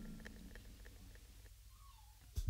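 Near silence just after the band stops playing, with the last of the music dying away at the start. A faint, short wavering tone sounds about one and a half seconds in.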